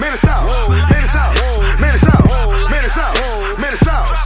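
Hip hop track: heavy sustained 808 bass under a gliding, bending high melody line, with steady hi-hats that break into a quick roll about two seconds in.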